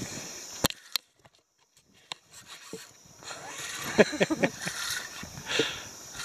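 Two sharp clicks in the first second, then a woman's short bursts of laughter about four seconds in, while she reels in a hooked fish.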